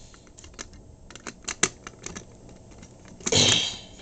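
Light metallic clicks and scrapes of a small key fumbling at the lock cylinder of a Simplex T-bar fire alarm pull station, the key not yet going in, with a cough.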